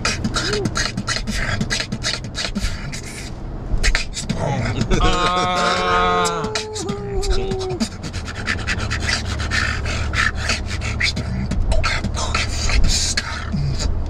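A man beatboxing freestyle, fast mouth-made kick and snare clicks in a running rhythm. Around the middle he hums a line that steps down in pitch for about three seconds. A car cabin's low road rumble runs underneath.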